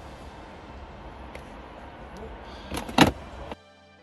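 Handling noise around a plastic car body control unit module: steady low background noise with a few faint clicks, then a sharp knock about three seconds in. Soft music comes in just before the end.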